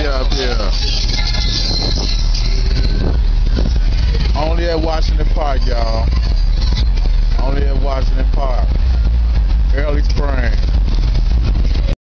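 Cars cruising slowly past with a loud, steady low rumble, and voices calling out several times over it.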